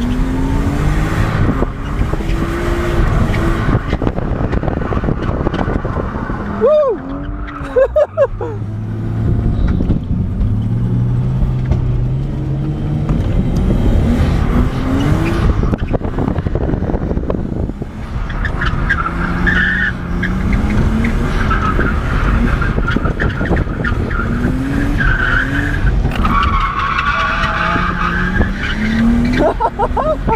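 Nissan R32 Skyline GTS-t drift car's engine heard from inside the cabin, revving up and down in repeated sweeps as it is driven hard, with a short lull about seven seconds in. Tyres squeal in bursts through the second half.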